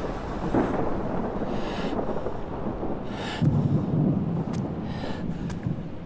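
Thunder-like rumbling sound effects, with a deeper swell about three and a half seconds in and brief rushing sweeps higher up.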